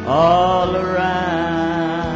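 A man singing into a microphone: one long note that scoops up at the start and is then held with vibrato, over instrumental accompaniment.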